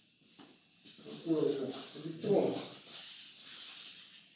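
A voice speaking briefly and indistinctly for about a second and a half, with faint chalk scratching on a blackboard.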